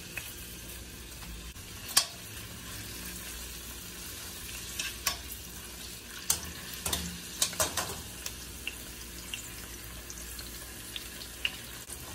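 Onion slices and minced garlic frying in oil in a stainless steel pan, a steady sizzle, while metal tongs stir them, clicking and scraping against the pan several times; the sharpest click comes about two seconds in, with a cluster of clicks past the middle.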